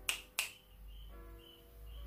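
Two sharp clicks about a third of a second apart, then a faint, short pitched tone about a second in.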